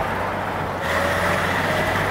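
BMW E21 323i's straight-six engine running at a steady cruise under road and wind noise, heard from inside the cabin with the roof panel off. The rush of wind and road grows a little brighter about a second in.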